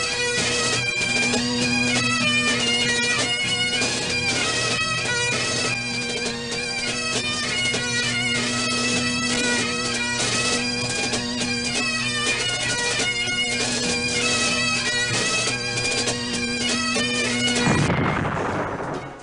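Bagpipe playing a quick melody over a steady drone. The drone drops out briefly in the first second, and the tune stops just before the end.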